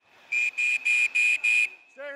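Referee's whistle blown in five short, rapid blasts, over faint arena noise.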